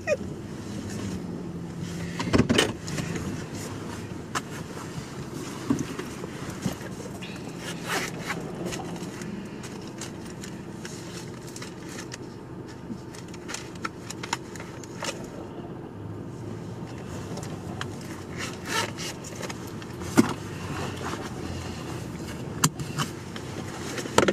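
Car cabin noise while driving: a steady low engine and road hum, with a few scattered light clicks and knocks.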